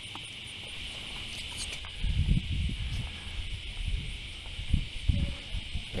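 Steady, even drone of insects in the summer trees, typical of cicadas. From about two seconds in, low irregular thumps and rumbles on the microphone.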